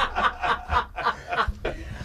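A group of people laughing together, short chuckles and snickers that fade after about a second.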